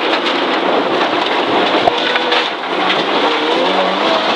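Subaru Impreza N14 rally car at speed on a gravel stage, heard from inside the cabin. Its turbocharged flat-four engine runs under load beneath a dense, steady rush of tyre and gravel noise, with the engine note climbing near the end.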